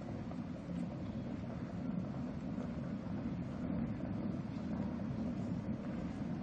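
A steady low rumble with a rough, noisy texture and no clear tune.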